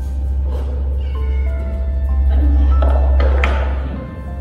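Background music with held notes and a steady bass, with hungry kittens and cats meowing over it, begging for food.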